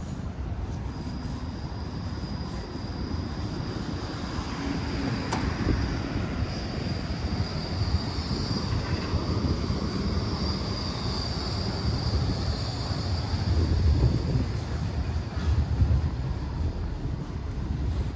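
Steady low street-traffic rumble with a long, high, wavering whine that sets in about a second in and fades near the end, typical of a passing vehicle.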